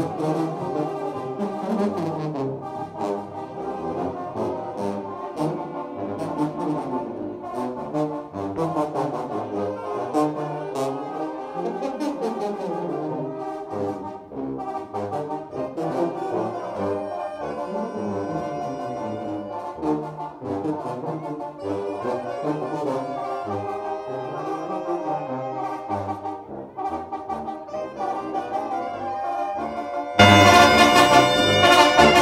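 Brass band (Oaxacan banda de viento) playing a dance tune, trombones and trumpets over a steady beat.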